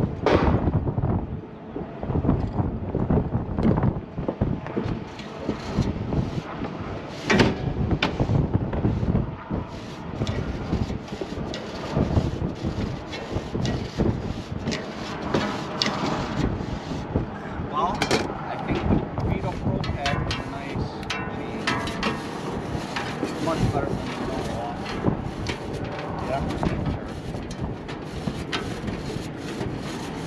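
Gusty wind buffeting the microphone in uneven rumbling surges, with a couple of sharp knocks from the condenser's sheet-metal fan housing being handled.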